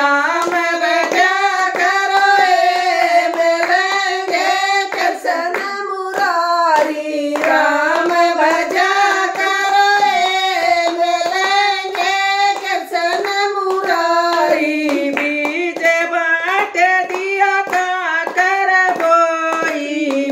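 Women's voices singing a Hindu devotional bhajan together as one melody line, with hand claps keeping a steady rhythm.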